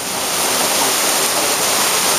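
Torrential rain falling hard, with water pouring off a roof, making a steady loud rush.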